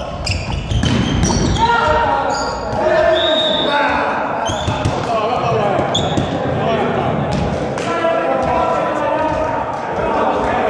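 Volleyball rally in an echoing sports hall: sharp smacks of the ball being struck, with short high squeaks of sneakers on the court floor, and players shouting to each other throughout.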